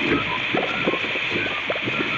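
Molten gold pouring from a ladle into a gear mould, as a cartoon sound effect: a steady hiss, with background music underneath.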